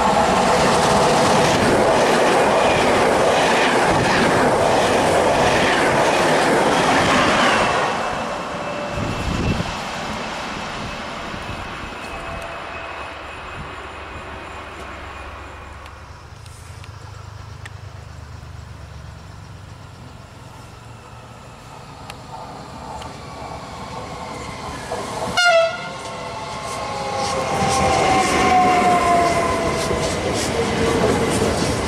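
An Intercity train passing through at speed, loud rush and wheel noise for about eight seconds, then fading away. Later a short horn blast sounds, and a Trenitalia Pop electric train runs in along the platform with a whine that falls in pitch.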